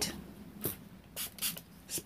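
A few faint, brief scrapes and clicks as an open jar of grunge paste and a small water bottle are handled.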